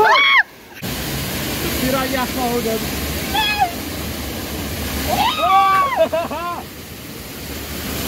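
Steady rush of a waterfall pouring down beside a rapids-ride raft, with riders shrieking and yelling "nee!" over it. The loudest is a long scream about five seconds in.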